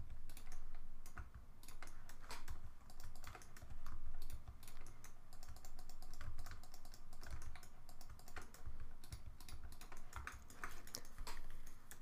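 Computer keyboard keystrokes and clicks, irregular and fairly quiet, as Blender shortcuts are pressed while editing a 3D mesh.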